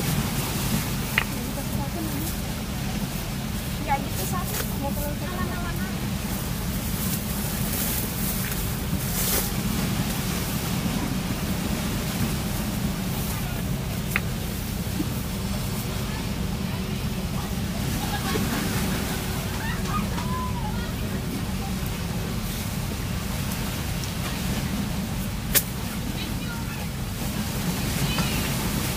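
A steady rushing background noise, heaviest in the low end, with faint, indistinct voices at times and a single sharp click near the end.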